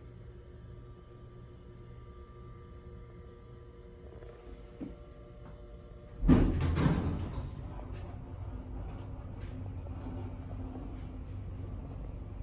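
Dover hydraulic elevator car at a landing: a steady machine hum fades out about four seconds in, a click follows, then the car doors open with a loud clunk about six seconds in and run on with a lower rumble.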